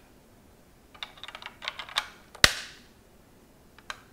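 Hard plastic parts of a Playmobil toy spaceship clicking as it is handled: a quick run of small clicks, then one loud, sharp snap about halfway through with a short fading tail. One more single click comes near the end.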